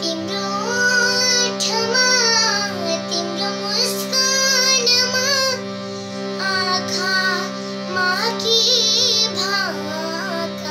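A young girl singing a melody with ornamented, wavering phrases over a harmonium that holds a steady chord underneath. Her voice breaks off briefly twice between phrases while the harmonium keeps sounding.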